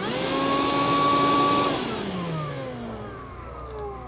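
DeWalt DCV585 FlexVolt 60V brushless dust extractor switched on from its wireless remote: the motor spins up with a rising whine, runs steadily for under two seconds, then is switched off and winds down with a long falling whine.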